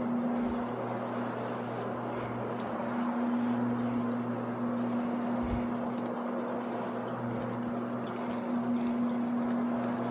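Rotary floor machine running steadily as it scrubs a carpet with its pad, the motor giving an even, unbroken hum.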